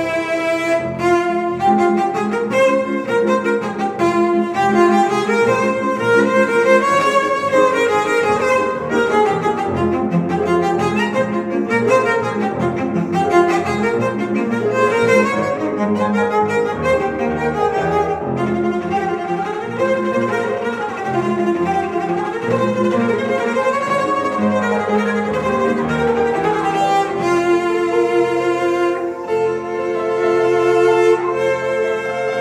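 Cello and Steinway grand piano playing a classical cello sonata together, the bowed cello line over a busy piano part; near the end the music settles onto long held notes.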